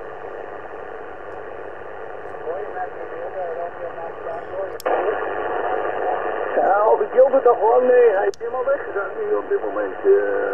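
Yaesu FT-710 HF transceiver receiving a single-sideband voice on 40 m (7.145 MHz LSB) through its speaker: band-noise hiss with a distant station talking. About halfway there is a click as the antenna is switched to the JPC-12, and the hiss and voice grow louder. Near the end another click switches back to the loop-on-ground antenna.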